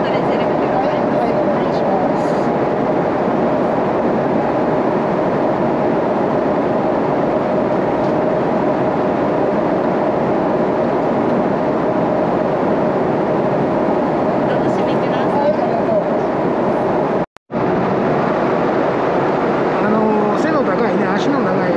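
Steady cabin noise of a Boeing 777-300ER airliner in cruise: engine and airflow noise with a faint steady tone in it. It cuts out for a split second a few seconds before the end.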